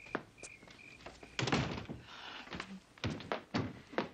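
A series of dull thunks and knocks indoors, the loudest about a second and a half in, with several more in the last second.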